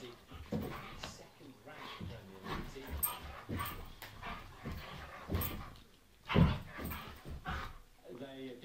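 Siberian husky vocalizing in short, irregular sounds while prancing about before chewing; the loudest comes about six and a half seconds in.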